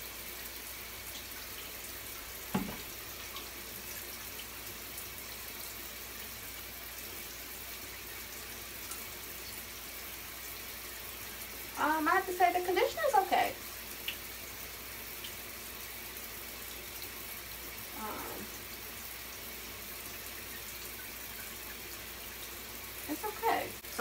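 Shower water running steadily in a tiled shower. A short bit of voice comes about halfway through, and a single light knock near the start.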